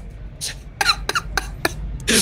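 A person laughing quietly in a string of short, breathy bursts with brief high-pitched squeaks.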